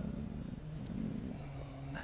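Quiet room tone: a steady low rumble, with a faint low hummed voice sound near the end.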